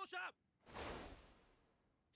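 Faint anime sound effect: a single whoosh about a second in, fading out over about half a second.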